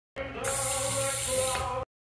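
Bathroom sink faucet turned on about half a second in, water running into the basin, with music playing in the background. The sound cuts off abruptly just before the end.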